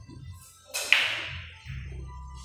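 A single sharp crack of pool balls struck hard, with a short ring that dies away over about half a second.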